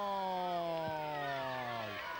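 A football commentator's long drawn-out goal call, one held "gooool" in a man's voice, sinking slowly in pitch and ending near the end.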